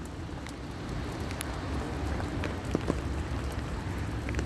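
Steady rain falling, with scattered single drops ticking close by, likely on the umbrella overhead, over a low rumble.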